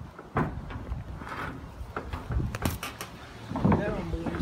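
Scattered knocks and clunks of a wooden white-pine mast being handled and stepped into a wooden boat, with low voices near the end.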